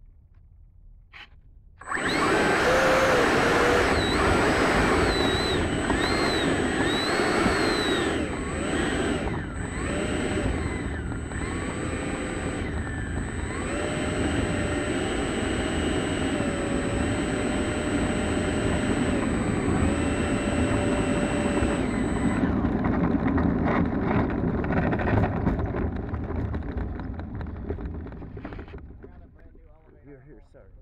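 80 mm electric ducted fan of an RC jet, spooling up suddenly about two seconds in and running at taxi throttle, its whine rising and falling in pitch with the throttle, then spooling down near the end.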